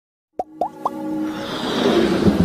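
Intro sound effects: three quick pops, each sweeping up in pitch, starting about half a second in, then music with a whooshing swell that builds.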